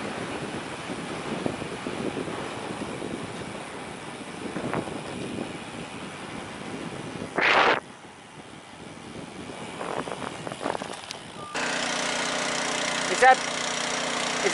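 Wind and road noise from riding a bicycle, with a brief loud burst of hiss about halfway through. About two-thirds of the way in, a nearby engine takes over, idling steadily.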